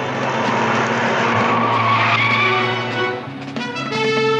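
Car engine running hard with tyres skidding and squealing, swelling to a peak about two seconds in, over orchestral music. The noise drops away just after three seconds.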